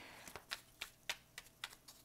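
Faint, irregular light clicks and taps, about six in under two seconds, as of a hand touching the tabletop or cards.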